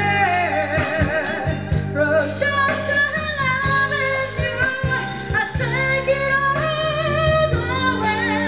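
Live jazz band with a woman singing: a sung melody with vibrato over drums, a steady bass line and keyboards.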